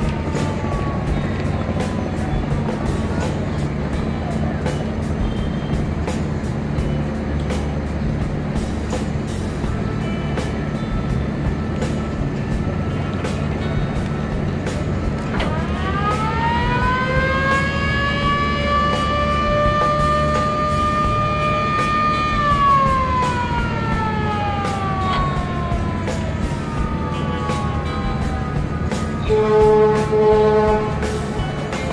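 A river passenger launch's motor-driven siren winds up quickly to a high steady wail about halfway through, holds for about seven seconds, then slowly winds down, over the low steady drone of the vessel's diesel engines.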